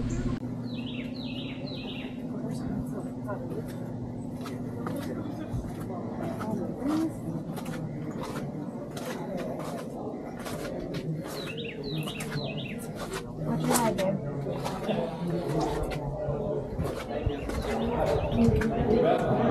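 Ambient sound of distant voices with many light clicks and knocks, and a bird chirping a short run of notes twice, about a second in and again near twelve seconds. A steady low hum stops about seven seconds in.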